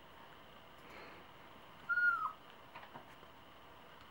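A Yorkshire terrier gives one short, high whine about halfway through that holds its pitch and then drops away. It is a frustrated whine at a butterfly it cannot reach. A few faint clicks follow.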